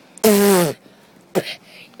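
A person's voice: one short, loud, harsh vocal cry of about half a second, falling in pitch, followed by a brief shorter vocal sound.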